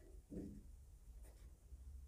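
Faint scratching of a pen writing on paper. A brief low sound comes about half a second in.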